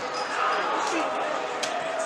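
Indistinct shouting and chatter of players on an outdoor football pitch, with a single sharp knock of the ball being struck near the end.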